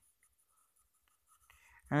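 Fountain pen nib scratching faintly across notebook paper while a word is written. The nib gives a lot of feedback.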